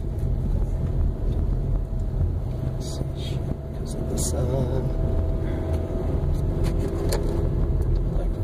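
Car driving slowly up a steep, narrow road, heard from inside the cabin: a steady low engine and tyre rumble, with a few brief light knocks or rattles about halfway through.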